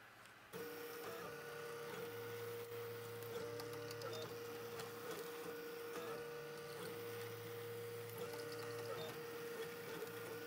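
Ultimaker 3D printer running, starting about half a second in: a steady whine with lower and higher tones that switch on and off every second or two as the stepper motors drive the print head.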